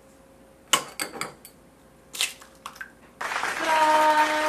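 An egg knocked one-handed against the rim of a small stainless steel bowl and broken open: a sharp crack just under a second in, a few lighter taps after it, and another crack past the middle. Near the end a steady sound with a held tone comes in.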